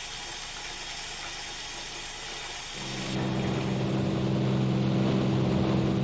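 A steady hiss, then about three seconds in a steady, low aircraft engine drone comes in and holds level.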